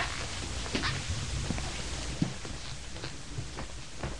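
Quiet room noise: a low steady hum with a few soft, scattered clicks, the sharpest a little after two seconds in.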